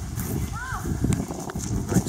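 Indistinct voices with scattered knocks and clopping, and one short rising-and-falling call about halfway through.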